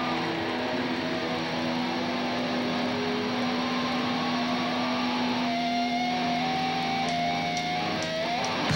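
Live electric guitars playing the opening of a rock song, with no drums: a long held note under ringing, sustained guitar lines. A note slides upward over the last couple of seconds.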